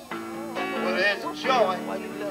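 A man singing into a handheld microphone over accompaniment with guitar, in a country style. The singing pauses briefly at the start, then a new phrase comes in over held backing notes.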